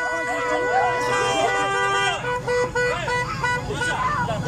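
Car horns held down, long steady blasts overlapping one another, one set stopping a little past halfway and another sounding after it, over people's voices.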